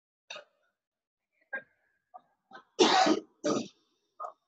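A man coughing: a few short, faint throat sounds, then two loud coughs about half a second apart near the end.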